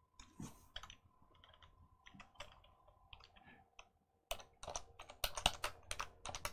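Typing on a computer keyboard: a few scattered clicks, then a quick run of keystrokes from about four seconds in.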